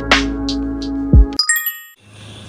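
Intro music with a beat cuts off about two-thirds of the way in, followed by a short, bright, bell-like chime: a subscribe-button notification sound effect.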